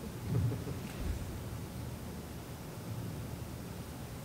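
Steady low rumble of auditorium room noise, with two soft low thumps in the first second.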